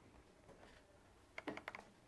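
A quick run of about four faint laptop keystrokes about one and a half seconds in, otherwise near silence.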